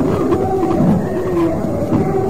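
Slow singing with long held notes that bend gently in pitch, typical of a congregational hymn.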